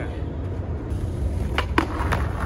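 Skateboard put down on asphalt with two sharp clacks near the end, as the rider pushes off and its wheels start rolling over a low rumble.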